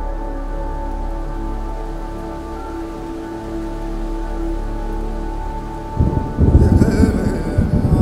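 Ambient music drone of held notes. About six seconds in, a loud rumble of thunder breaks in, with the hiss of rain.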